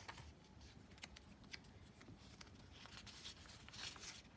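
Faint rustling and crackling of the thin paper pages of a Hobonichi Techo Day Free journal handled and turned by hand, with a few soft crinkles that get a little louder near the end as a page is lifted.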